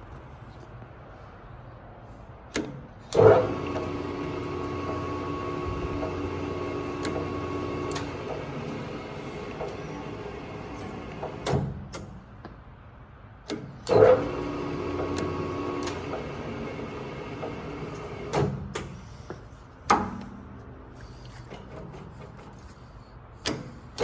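Webb metal lathe run under power, its drive giving a steady hum of several tones, started and stopped with loud clunks of its control levers: it runs for about eight seconds from about three seconds in, then again for about four seconds from about fourteen seconds in, with two more clunks soon after.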